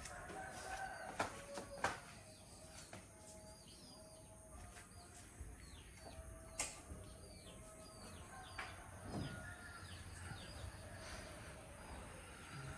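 Faint rooster crowing in the background while small birds chirp over and over in short falling notes. A few sharp clicks stand out, the loudest a little over a second in, near two seconds and about six and a half seconds in.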